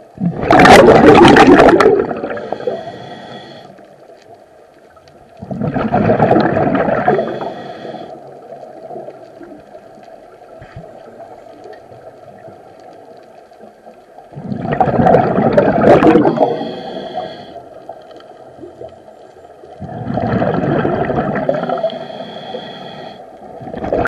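A scuba diver breathing through a regulator underwater: four long bursts of exhaled bubbles rushing and gurgling, about every five to six seconds, with a fainter hiss between them.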